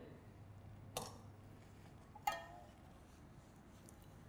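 Quiet kitchen room tone broken by two light clinks of small stainless steel bowls being handled on a steel counter: a soft click about a second in, and a brief ringing clink a little past two seconds.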